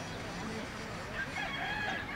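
A long, high, drawn-out call, held with little change in pitch, starts a little over a second in and carries on past the end, over faint distant voices.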